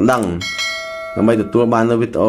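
A notification-bell sound effect: one bright ding that rings for under a second, starting a little way in. There is speech just before and just after it.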